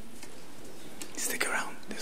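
Quiet, unintelligible voices of people talking off-microphone, starting about a second in over steady room tone.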